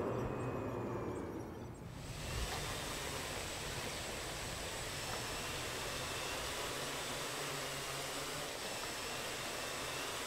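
A low whoosh fades out over the first two seconds. Then a steady hiss of storm wind and rain starts suddenly and holds evenly.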